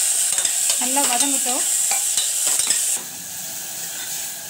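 Sliced onions, green chillies and tomato sizzling in hot oil in a pressure cooker pot while a steel ladle stirs them, with light clicks of the ladle against the pot. The sizzle turns quieter about three seconds in.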